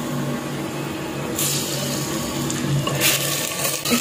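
Raw chicken pieces added to hot oil and browned onions in a clay pot and stirred with a wooden spoon, sizzling; the sizzle rises sharply about a second and a half in and again about three seconds in, over a steady low hum.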